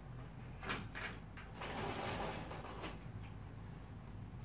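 Glass patio door being opened: a few sharp clicks, then about a second and a half of sliding, scraping noise that ends in a click.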